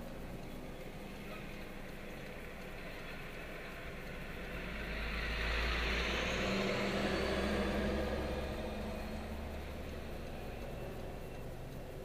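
A diesel semi truck pulling a dump trailer passes close by. Its engine and tyre noise swell to a peak about five to eight seconds in and then fade. It is heard from inside a car, over the car's steady low idle.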